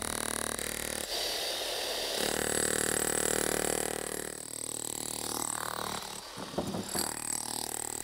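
Steel bar scraping and crunching as it is driven into an asphalt walkway to cut it, louder in the first half.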